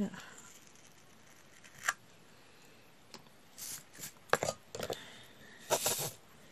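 Small plastic diamond-painting tray being handled, its loose resin drills rattling and clicking in short bursts in the second half, as the tray is tipped to be emptied. One sharp click comes about two seconds in.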